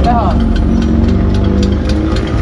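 Heavy diesel engine idling steadily: a low, even rumble with a faint regular ticking about three times a second.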